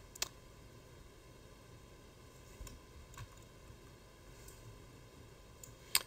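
Quiet room tone with a few faint, brief clicks spread through it.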